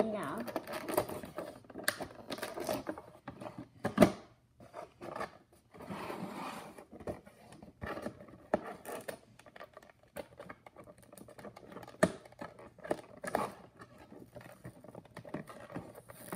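Scissors snipping and scraping at clear plastic tape and packaging on a cardboard box, with irregular sharp snips and crinkles of plastic; the loudest snap comes about four seconds in.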